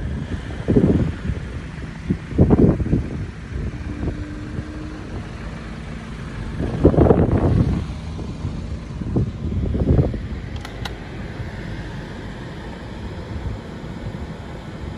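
Wind buffeting a phone microphone in irregular gusts, several short bursts over a steady low rumble, with two brief clicks near the end.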